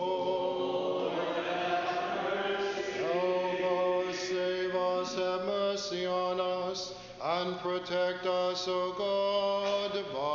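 Unaccompanied Orthodox liturgical chant sung by a group of voices, on long held notes with gliding changes of pitch and a brief break about seven seconds in.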